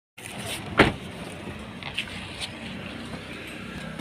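A car's steady low hum with a loud sharp knock a little under a second in, then two fainter clicks around two seconds in.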